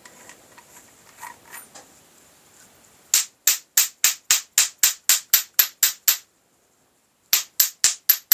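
A metal tube tapped repeatedly against a metal casting mould, quick ringing metallic taps about four a second starting about three seconds in, a pause of about a second, then another run near the end: knocking a freshly cast lead feeder basket loose from the mould.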